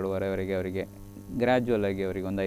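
A person speaking over a steady low electrical hum, with a short pause in the talk about a second in while the hum carries on.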